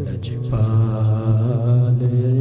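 Naat recitation: a male voice singing long held notes through a microphone and PA, unaccompanied, the melody bending slightly about halfway through.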